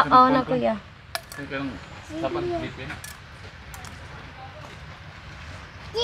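A few sharp, light clicks of spiny sea urchin shells being handled and pried open by hand, one about a second in and a couple around three seconds, over a low steady background.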